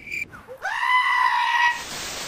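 Edited-in sound effects: one drawn-out, high animal-like call that rises at the start and is held for about a second, then the hiss of TV static starting near the end.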